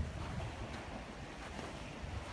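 Wind blowing across the microphone: a steady low rushing rumble.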